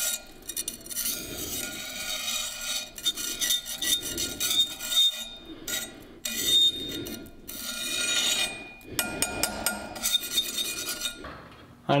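A steel hand file scraping across a forged carbon-steel chef's knife blade clamped in a vise, oxidized from a normalizing cycle. The strokes repeat about once a second, with a steady ringing tone from the steel beneath them, and a few sharp clicks come near the end.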